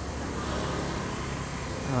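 Outdoor street noise with a motor scooter going past, its sound swelling slightly in the middle and then easing off.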